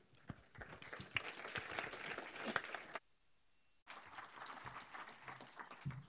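Audience applauding, a dense patter of many hands clapping; it cuts out abruptly for most of a second about halfway through, then carries on.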